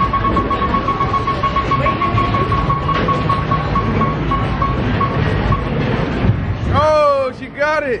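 Arcade prize wheel slowing after a spin: a rapid run of beeps at one pitch that space out as the wheel slows and stop about five and a half seconds in, over steady arcade din. Near the end a voice cries out twice, falling in pitch.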